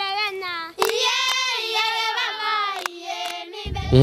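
Group of young Maasai women singing together in unison, high voices holding long, slowly moving notes. A low rumble comes in near the end.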